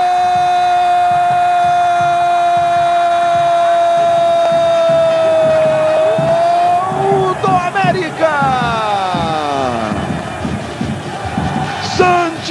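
A Brazilian TV football commentator's drawn-out goal shout, "Goooool!", one note held for about seven seconds, then a few short calls and a call that slides down in pitch near the end.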